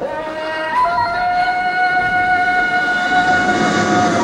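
A single long, steady held note, fairly high in pitch, begins about a second in and holds without wavering, after a brief shorter note.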